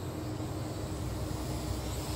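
UTO U921 camera quadcopter in flight, its motors and propellers giving a steady hum with one held tone.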